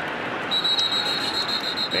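Stadium crowd noise with a referee's pea whistle trilling steadily from about half a second in, blowing the play dead as the ball carrier is stopped in a pile-up at the line.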